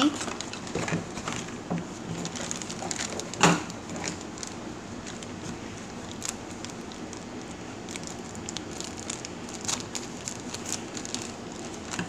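Scissors snipping through thin clear plastic packaging, the plastic crinkling and rustling with scattered small clicks, and one sharper click about three and a half seconds in.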